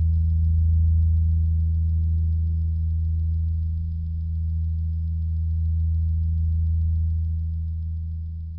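A steady, deep drone holding one low pitch throughout, slightly louder early on and easing toward the end.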